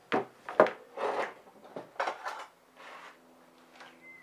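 A wooden tile-pouring frame being handled on a wire rack: a series of sharp wooden knocks and scrapes, several in quick succession, the loudest a little over half a second in.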